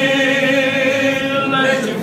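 Men's voices singing together, holding one long note of a gospel worship song, the note easing off near the end.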